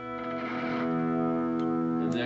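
Electric guitar chord played with a volume swell: it fades up from near silence over about half a second, then rings on steadily through an effects chain.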